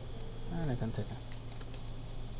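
Clicks of a computer keyboard and mouse during software editing: a quick run of several clicks in the second half, over a low steady hum. A brief voiced sound from the instructor comes about half a second in.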